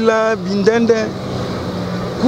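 A man's voice for about a second, then a steady low motor-vehicle engine hum over a haze of traffic noise.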